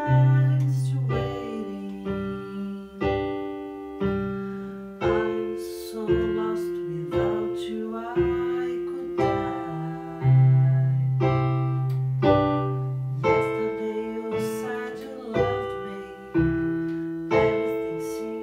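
Piano playing slow chords, a new chord struck about once a second, each ringing and fading, over deep held bass notes.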